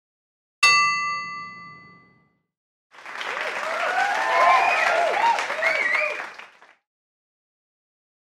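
A single bell strike sound effect, ringing out and fading over about a second and a half, followed by a burst of applause and cheering lasting about four seconds.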